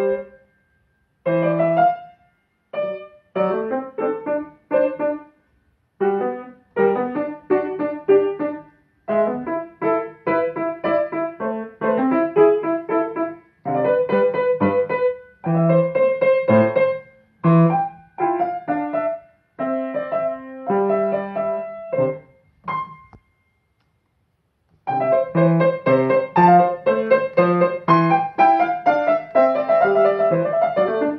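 Grand piano played in short stop-start phrases, each a second or two long with brief silences between. A longer pause comes about 23 seconds in, after which the playing runs on without breaks.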